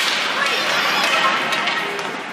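Ice hockey play in an arena rink: a sharp crack of a stick on the puck or ice right at the start, then a dense hiss of skates scraping the ice, with voices faintly mixed in.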